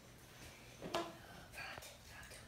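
Quiet room tone with a faint click about a second in and a brief faint voice near the end.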